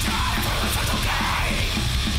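Hardcore crust punk song: a full band playing loud and fast, with yelled vocals.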